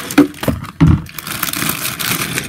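Sealed plastic Lego parts bags being handled: two thumps in the first second, then a rustle of crinkling plastic.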